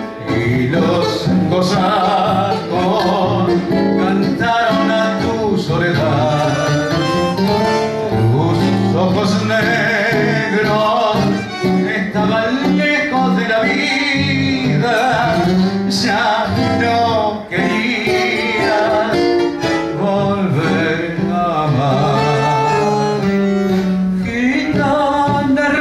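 A man singing a tango through a microphone and sound system, with vibrato on the held notes and guitar accompaniment.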